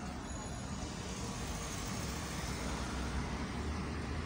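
Steady low rumble of outdoor background noise, with no single distinct event.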